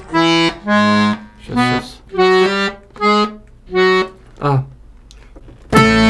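Bayan (Russian button accordion) played haltingly, as if by a beginner: about seven short chords, each followed by a pause. Near the end a loud, full, sustained chord comes in.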